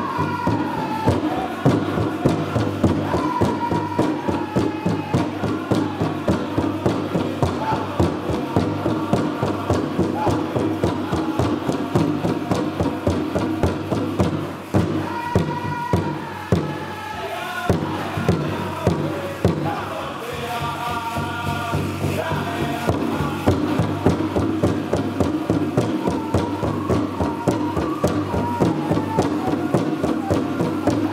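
Powwow drum group performing a jingle dress song: singers strike a large bass drum together in a steady beat under high-pitched chanting. Around the middle the even beat breaks and the level dips briefly before the song carries on.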